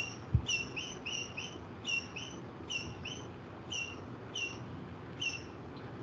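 Small bird chirping over and over: short, high, slightly falling chirps, singly or in quick pairs, about one to two a second. A single soft low thump comes about a third of a second in.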